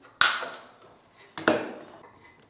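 Two sharp clacks about a second and a quarter apart, the second with a short high ring, as an orange plastic plug socket and its parts are handled and knocked together over the tool-strewn island.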